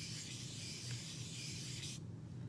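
Sponge dauber rubbing soft pastel chalk onto cardstock with a light touch: a steady, soft rubbing hiss.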